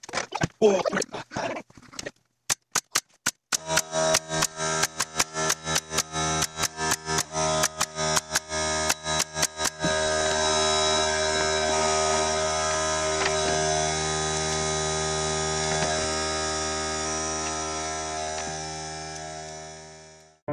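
Pneumatic nail gun firing in quick succession, about three shots a second, until about ten seconds in. Under it an air compressor starts running, a steady hum, and keeps going after the nailing stops before fading out.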